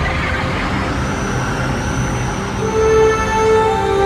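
Film-trailer soundtrack: a deep, steady rumble with a noisy rush over it, joined about two and a half seconds in by long held musical chords.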